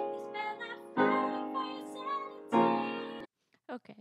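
Piano chords struck about every second and a half, each ringing and fading, with a young woman singing softly over them. The recording cuts off suddenly near the end.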